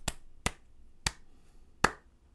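One person clapping slowly and sparsely, four single handclaps that space out as they go, the last one the loudest.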